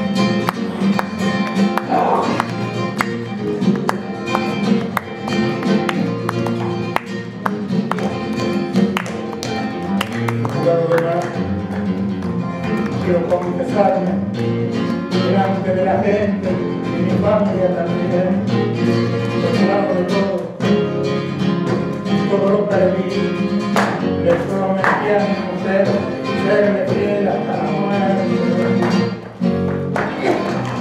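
Flamenco guitar playing, with strummed and plucked passages. About twelve seconds in, a woman joins with long, wavering flamenco singing.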